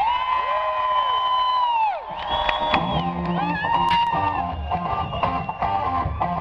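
Live rock band playing at an outdoor concert, heard from within the audience, with people nearby whooping and cheering. In the first two seconds a long high note is held while the bass drops out, then the full band comes back in.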